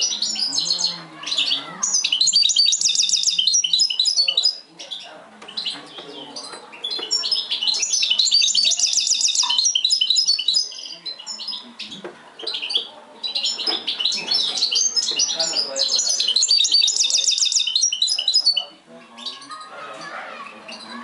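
Caged goldfinch hybrid (mixto) singing: three long phrases of fast twittering song, each with a rapid trill of repeated notes, separated by short pauses.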